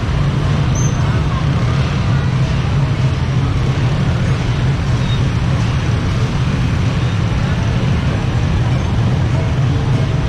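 Dense slow-moving motor scooter traffic: many small engines running together in a steady low hum, with crowd voices mixed in.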